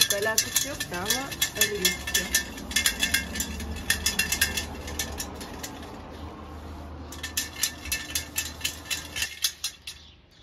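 Dry seeds rattling and pattering in a round metal sieve as it is shaken and rubbed by hand, sifting them onto paper. The rapid clicking comes in two stretches, one at the start and a second about seven seconds in.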